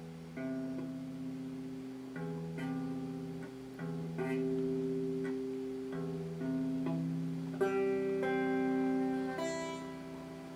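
Electric guitar strumming chords slowly, one chord about every second or two, each left to ring before the next. It is a beginner practising chord shapes and changes. The strongest strum comes about three-quarters of the way through.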